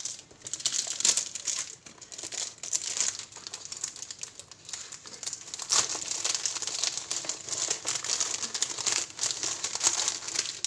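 Thin clear plastic shrink-wrap crinkling and crackling as it is peeled and pulled off a cardboard box of watercolour tubes, in quick irregular bursts with some tearing.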